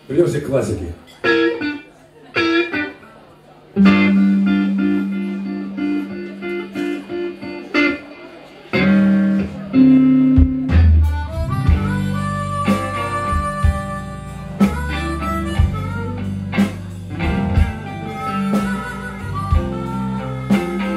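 Live blues band starting a number. A few short stabs come first, then a harmonica plays long held notes from about four seconds in. Around ten seconds in, electric guitars, bass and drums join in full.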